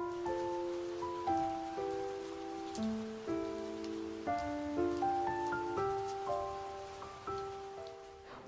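Steady rain falling on stone and plants, under a gentle music track of slow, sustained notes that change about every half second. The music fades down near the end.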